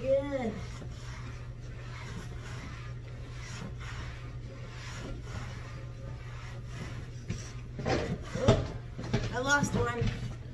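A damp microfiber cloth rubbing and wiping over a large vinyl exercise ball, over a steady low hum. Near the end come louder knocks and rubbery squeaks as the ball is shifted.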